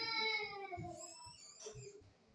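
A young child's high, drawn-out voice holding wavering notes without words, loudest at the start and fading away over the second half.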